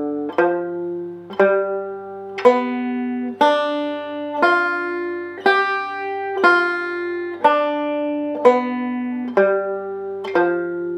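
Five-string banjo playing a G7 arpeggio (G, B, D, F) slowly, one picked note at a time. The notes come about one a second, each ringing until the next, climbing up the chord and then stepping back down.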